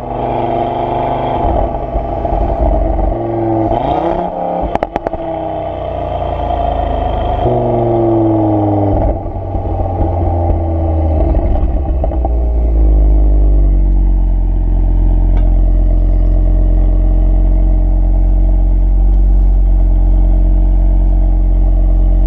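Audi RS3's turbocharged five-cylinder through an open-valve exhaust, rising and falling with revs under driving; a quick run of crackles around four to five seconds in, the overrun pops its retuned fuel cut-off gives on a downshift. From about thirteen seconds it settles to a steady low idle.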